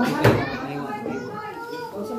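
Children's voices and chatter from several people at a party, with a single sharp knock about a quarter of a second in.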